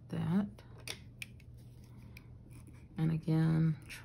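Faint, short scratching strokes of a drawing tool on sketchbook paper, with a few light ticks.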